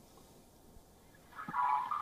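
Near silence for over a second, then a faint sound with a few steady tones begins about a second and a half in, just before speech resumes.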